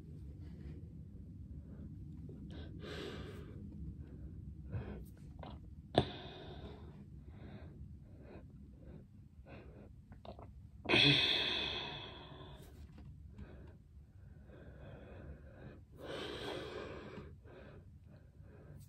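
A person sniffing perfume on the wrist: three long inhales through the nose, the loudest about eleven seconds in, with a few small handling clicks, the sharpest about six seconds in.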